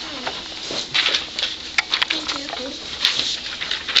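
Sheets of paper rustling and being shuffled as handouts are passed out and pulled from a pile, with a series of short sharp crinkles and taps. Indistinct voices murmur underneath.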